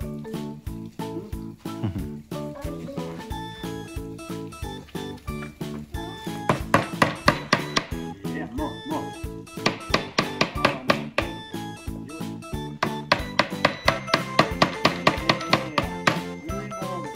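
A child hammering a nail into a small wooden birdhouse kit: bursts of quick, light hammer taps, several a second, in three runs. Steady background music plays under it.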